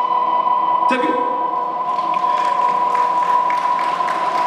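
A rock band's amplified electric guitars ringing out as a song winds down: a steady high ringing tone is held throughout, with a sharp hit about a second in.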